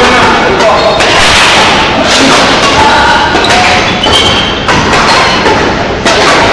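Loud badminton play: sharp hits of rackets on the shuttlecock and thuds of players' feet on the court floor, roughly once a second, over a din of players' voices in a large sports hall.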